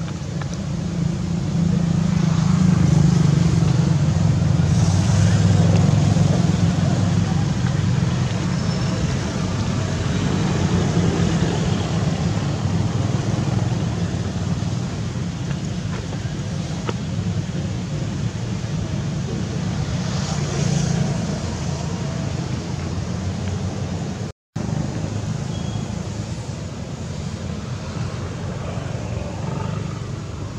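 Steady low background rumble, with a brief dropout about 24 seconds in.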